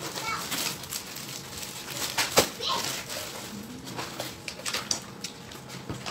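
Rustling and crinkling of a fabric reusable shopping bag and plastic-wrapped grocery packets being handled and set down, with irregular crackles and knocks; the sharpest comes a little over two seconds in.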